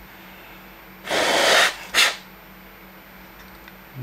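A person's forceful breath: a noisy rush of air lasting about half a second, starting about a second in, then a short sharp puff.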